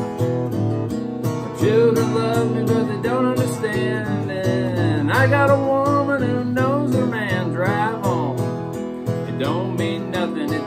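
Acoustic guitar strummed steadily in a country rhythm, an instrumental passage between verses of the song. A wordless voice wavers over the strumming from about two seconds in.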